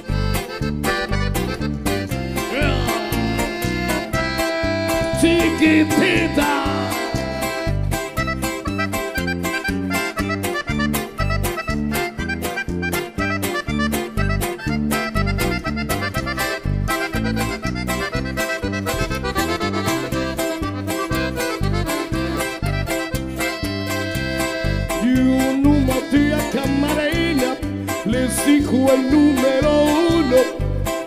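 Norteño band music with the accordion playing the lead melody over a steady bass-and-guitar beat.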